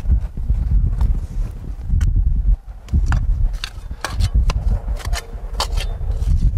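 Steel Schneeboer spade with a cut-away, serrated blade being driven into and levering garden soil: a run of sharp crunches and clicks, sometimes several a second, over a steady low rumble.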